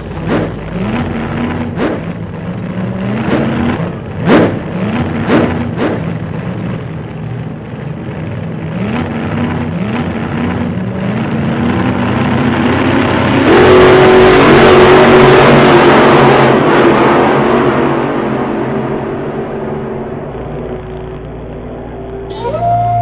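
Off-road vehicle's engine accelerating through the gears, its pitch climbing and dropping back with each shift in quick succession. About halfway through, a louder rushing noise swells for a few seconds and then fades.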